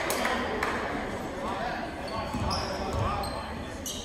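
Echoing basketball-gym ambience: indistinct chatter from the crowd and benches, with a few sharp knocks and short high squeaks from sneakers and the ball on the hardwood court.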